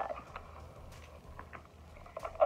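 Faint handling noise: a few light clicks and taps as small leather goods are moved about, over a low steady hum.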